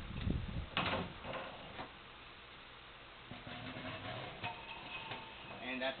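A GS-X pinsetter roller being slid out of the machine's frame, rubbing and knocking against it, with a sharp clack about a second in and a few smaller clacks after it.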